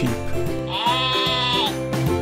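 A single sheep bleat about a second long, starting near the middle, over background music.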